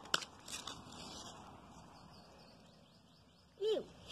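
Faint outdoor background noise, with a sharp click at the start and a short call that falls in pitch shortly before the end.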